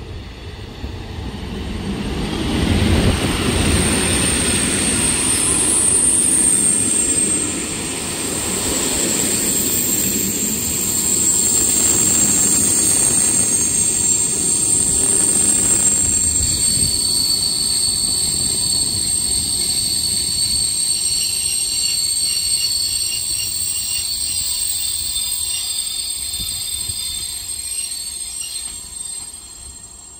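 EP07 electric locomotive and its passenger coaches passing at speed: wheels rumbling over the rails with a steady high-pitched whine. The sound builds over the first few seconds, holds, and fades away near the end.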